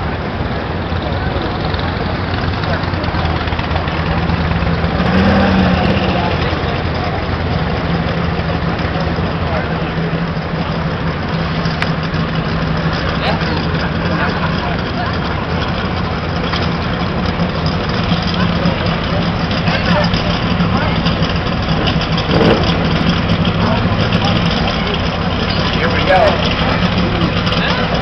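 Drag-race car's engine idling steadily while the car is driven back to the starting line after its burnout.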